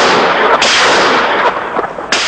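Heavy weapon firing: two loud blasts, the second about half a second in, each a sudden crack trailing off into a long noisy tail.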